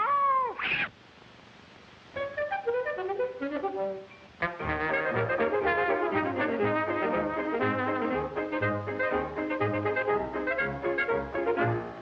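A cartoon cat's yowl that rises and then falls in pitch, lasting about a second. After a short pause, a brass-led cartoon orchestra score comes in: light melodic notes first, then from about four seconds in the full band with trumpet, trombone and a steady bass beat.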